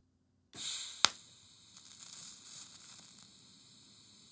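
TIG welding torch tack-welding thin stainless steel. After a faint gas hiss, a sharp click about a second in, then a faint steady hiss while the arc burns, with another small click near the end.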